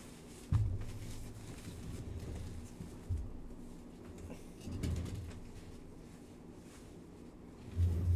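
A few dull thumps and soft handling noises as hands are wiped with napkins at a desk and the body shifts in the chair, the loudest thump about half a second in and another at the very end.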